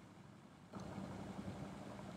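Near silence, then from under a second in a faint steady background hiss of room tone.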